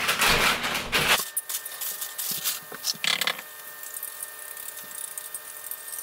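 Kitchen handling sounds at a stovetop: a loud rustling noise for about the first second, then quieter scattered clicks and taps of utensils and cookware, with a short scrape about three seconds in.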